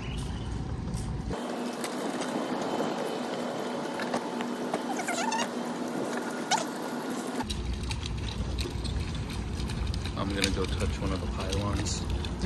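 Steady rushing outdoor noise with a few short rising chirps about five seconds in.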